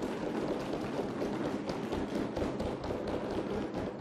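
Audience in an assembly hall applauding: a dense, steady patter of many taps.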